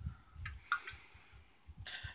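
Faint handling noise of an aluminium soda can being moved in the hand: soft low thumps and a couple of light clicks, with a soft hiss through the middle.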